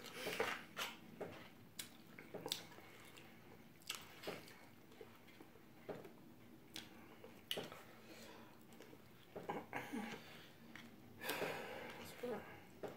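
Soft chewing with scattered short clicks and scrapes of a plastic fork against a paper plate, a few seconds apart.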